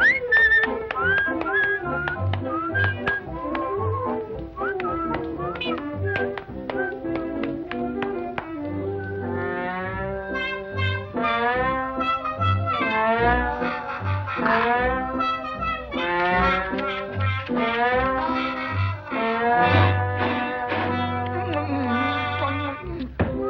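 Early-1930s cartoon orchestral score with brass over a steady bass beat, with sliding brass phrases from about halfway through.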